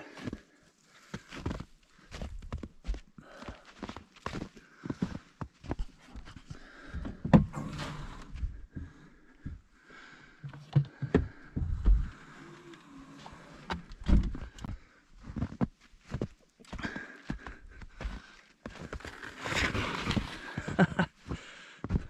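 Footsteps in snow with irregular knocks, thumps and handling noises around a snowed-in truck, at times the crunch and scrape of snow being cleared, louder for a couple of seconds near the end.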